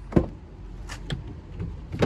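One sharp knock, then a few lighter clicks and knocks as things are moved about in a car, over a low steady hum.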